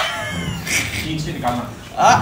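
A high-pitched vocal squeal that slides down in pitch right at the start, followed by softer voices. It fits a man laughing or making a squealing noise during a party game.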